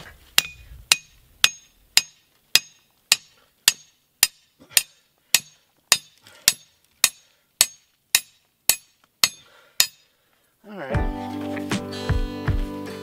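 A rebar rod driven into hard ground with the back of a hatchet: about eighteen sharp metallic strikes, evenly paced at roughly two a second. Acoustic guitar music comes in near the end.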